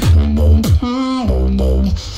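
Vocal beatbox track playing: deep bass notes and sharp snare-like clicks made by mouth, with a pitched vocal line over them that holds one note about a second in.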